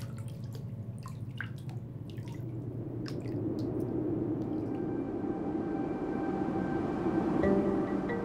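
Water dripping into a bathtub: a handful of single drops in the first three seconds. A whoosh then swells up and grows louder, with sustained music tones fading in under it near the end.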